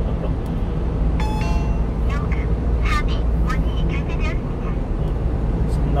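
Steady low road and engine rumble inside the cab of a 1-ton refrigerated box truck at speed. About a second in there is a short electronic beep from the Hi-pass toll unit as the truck goes through the tollgate, the signal that the toll has been registered.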